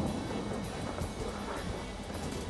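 Quiet background music under faint handling noise.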